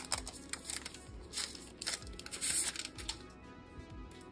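A smartphone's grey protective wrap being pulled and peeled off by hand: irregular crinkling and tearing, loudest about two and a half seconds in, over quiet background music.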